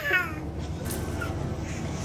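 Baby's high-pitched squeal, falling in pitch, in the first half-second, then a lull of faint room sound.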